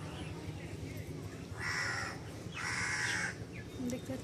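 A crow cawing twice, two harsh calls about a second apart, over a low steady rumble.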